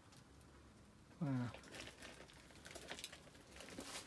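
A man says "wow" once, then faint scattered light clicks and rustles of footsteps and movement among debris on a shed floor.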